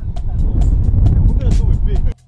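Loud low rumble of a moving car, engine and road noise together, cutting off suddenly near the end.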